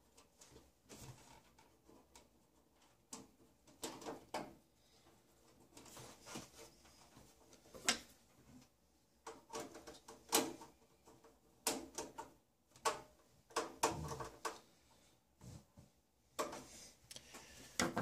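Perforated metal side panel of a tower PC case being slid and pressed into place on the case: irregular scrapes, clicks and knocks of panel against frame.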